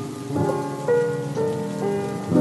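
Steady hiss of rainfall, a rain sound effect, under soft instrumental backing chords that change every half second or so in a gap between sung lines.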